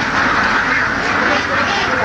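A large flock of domestic ducks quacking together in a dense, continuous chorus.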